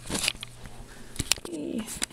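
A camera being picked up and handled: a series of sharp knocks and rubbing noises on the microphone, with a short falling hum near the end.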